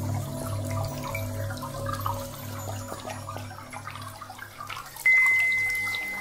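Ambient sound-healing music built on a 528 Hz tone: a slowly pulsing low drone and held tones under a soft trickling-water layer. About five seconds in, a single high ringing note is struck suddenly and fades slowly.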